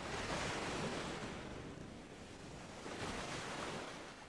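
Surf on a beach: two swells of rushing wave noise, one at the start and another about three seconds in.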